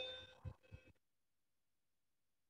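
Near silence: a spoken word fades out at the start, followed by two faint low thumps within the first second, then complete silence with no background noise.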